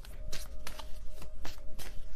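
A deck of tarot cards being shuffled by hand: a quick, irregular run of short card slaps and flicks, about three or four a second.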